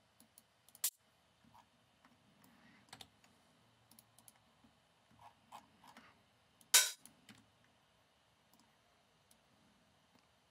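Scattered sharp clicks of a computer mouse and keyboard, a few spread across the seconds. The loudest comes about seven seconds in.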